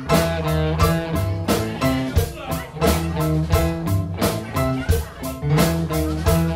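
Live rock band playing a steady-beat instrumental groove: drums, bass, electric guitar and keyboards, with no lead vocal.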